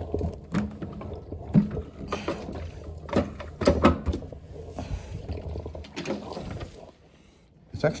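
Clunks and knocks of a carpet-cleaning floor machine being handled and tipped back to reach its pad underneath, with a low hum under them that stops about a second before the end.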